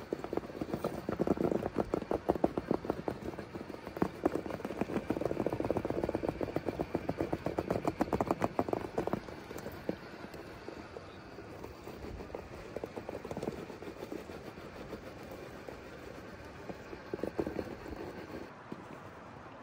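A 1/6-scale Axial SCX6 RC rock crawler clawing up a steep rock face: rapid clattering and ticking of its tyres and chassis against the rock, in bursts that are busiest in the first half and pick up again near the end.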